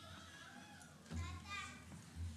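Faint, indistinct children's voices in a large hall. A child's high-pitched voice rises about halfway through, together with a low rumble.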